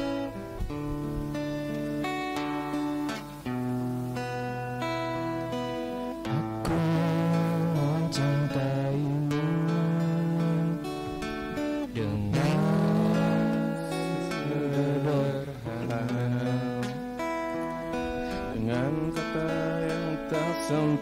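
Acoustic guitar playing an accompaniment, joined about six seconds in by a male voice singing over it, its pitch sliding up and down.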